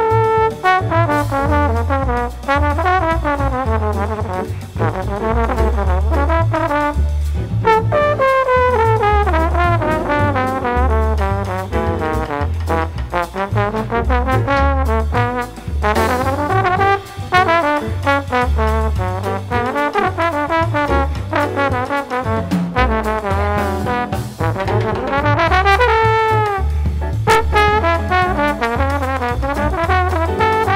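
Slide trombone playing a jazz solo of quick running lines, with upright bass and drums accompanying.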